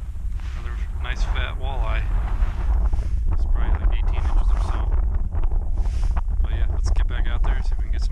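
Strong wind buffeting the microphone, a heavy, steady low rumble, with a voice breaking through at times.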